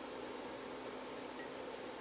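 Steady low hiss of room tone, with one faint small tick about one and a half seconds in.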